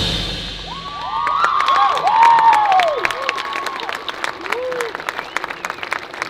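A stadium crowd applauds and cheers just after a marching band's piece cuts off, with the band's last chord dying away at the start. Several high whoops rise and fall over the clapping in the first half, and one more comes near the end.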